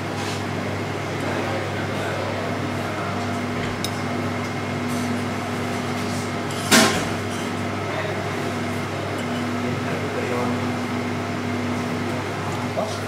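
Steady machine hum of a professional kitchen's equipment, with one sharp clink about seven seconds in.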